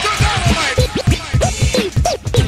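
Old-school hip hop with a DJ scratching a record on a turntable over the drum beat: quick, repeated up-and-down scratch sweeps between the kick hits.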